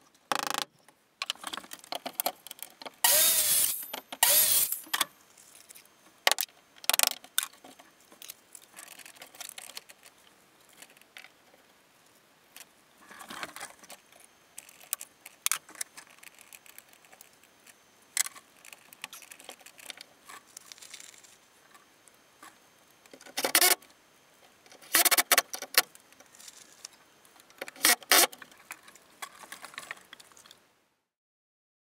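Hand plumbing work on PEX tubing in an open stud wall: scattered knocks, clicks and short rattles as the tubing is handled, clipped and fastened to the wood framing, with the loudest bursts of noise a few seconds in and again in several bunches near the end.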